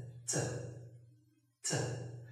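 A man's voice saying the reduced, weak-form syllable "tə" (the reduction of "to") twice, about a second and a half apart. Each starts with a breathy burst and fades away.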